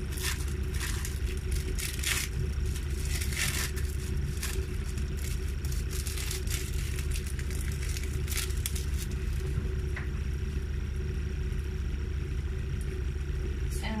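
Crinkling and rustling of the plastic wrapper on a sliced-cheese slice as it is peeled off, in short scattered bursts, mostly in the first nine seconds. Under it runs a steady low hum.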